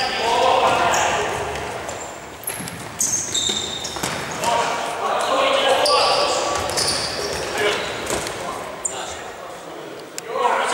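Indoor futsal play: the ball being kicked and bouncing on the hard court, with several short high squeaks of shoes on the floor and players' shouts, all echoing in a large sports hall.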